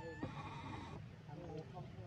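Infant macaque crying: a short high-pitched call at the start, then a few brief wavering cries in the second half.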